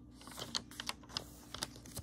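Glossy magazine paper handled by hand: a run of about ten irregular, sharp clicks and crinkles as fingers press and slide over the pages.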